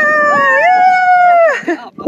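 A high-pitched human voice holding one long, howl-like call for about a second and a half, rising slightly and then falling away.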